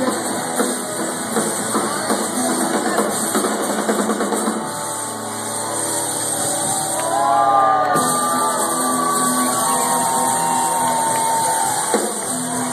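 Live rock band with two electric guitars and a drum kit playing. About four and a half seconds in the full band drops out, leaving held electric guitar notes that bend and slide in pitch, and the drums and guitars crash back in at the very end.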